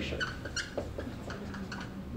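Dry-erase marker on a whiteboard: a handful of short, irregular squeaking and scratching strokes as words are written, over a faint steady room hum.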